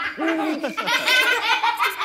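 Cartoon character voices laughing: a child-like voice in a quick run of short ha-ha notes, each rising and falling in pitch.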